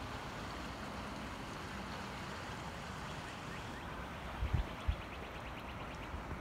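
Creek water rushing steadily over a shallow riffle, with two brief low thumps on the microphone about four and a half seconds in.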